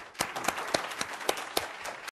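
Audience applauding, a dense patter of many hands clapping, with several louder single claps close by standing out.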